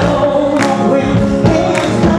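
Live music with several voices singing together over a steady beat of about two strokes a second.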